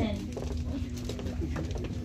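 Hall room tone: a steady low hum with faint murmuring voices and a few small knocks.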